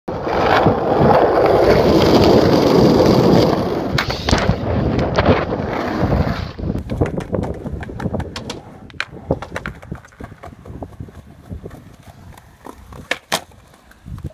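Skateboard wheels rolling loudly over rough asphalt, with a few sharp clacks. After about six seconds the sound cuts to quieter rolling over paving tiles with scattered ticks, and a sharp skateboard clack near the end.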